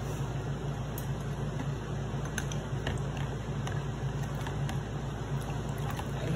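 Fresh limes being squeezed by hand into a plastic pitcher of lemonade: soft squishing and trickling juice with a few faint light clicks, over a steady low hum.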